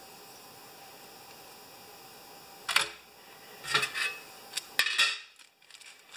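A few light metallic clicks and rustles from a small metal probe tool being handled in the fingers, first about three seconds in, then again around four and five seconds, over faint steady room hiss.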